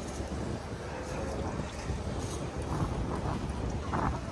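Wind buffeting the microphone over a steady low rumble of a Segway Ninebot ES4 electric scooter rolling along a paved street.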